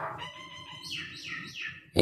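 Small bird chirping: several short, high notes, with a run of three or four quick downward-sliding chirps about a second in.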